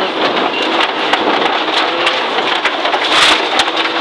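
Inside the cabin of a Subaru Impreza N14 rally car, gravel and grit pelt the underbody and wheel arches in a dense crackle. The turbocharged flat-four engine is faint beneath it as the car slows hard on a loose, wet gravel stage. A brighter burst of spray comes a little after three seconds.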